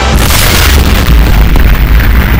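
A loud boom sound effect: a hissing blast swells just after the start and fades within about a second, over a deep rumble that carries on.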